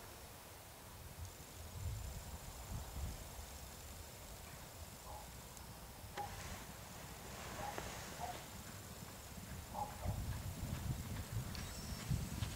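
Muffled hoofbeats of two racehorses cantering on an all-weather gallop surface, faint at first and louder near the end as the horses come closer.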